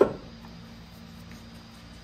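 A single sharp knock as a metal tube is pushed into a hole cut in a plastic car bumper, dying away quickly. After it, a faint steady hum with a low tone.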